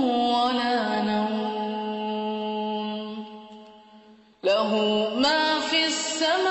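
Melodic Quran recitation in tajweed style: one voice holds a long, slightly wavering note that slowly fades out, then a new chanted phrase begins sharply about four and a half seconds in.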